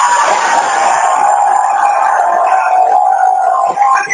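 Loud crowd noise mixed with the group's live music, with one long steady note held almost the whole way through, breaking off near the end.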